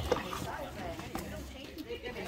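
Background voices of people talking, with a couple of light knocks.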